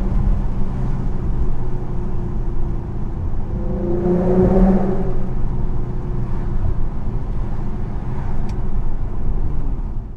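Infiniti Q50's V6 and custom cat-back exhaust heard from inside the cabin while cruising, a steady low drone with road noise. The note swells briefly about four seconds in.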